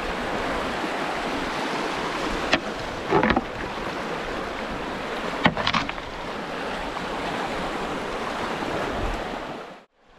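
Brook water rushing over rocks around a canoe in a shallow riffle, a steady wash of noise, with a few sharp knocks about two and a half, three and five and a half seconds in. The sound cuts off just before the end.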